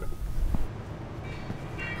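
Low, steady rumble of a glassblowing studio's gas furnaces, which drops away sharply less than a second in, leaving quieter room noise.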